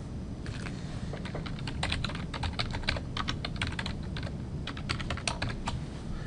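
Computer keyboard being typed on: a quick run of keystroke clicks as a username and password are entered, starting about half a second in and stopping shortly before the end.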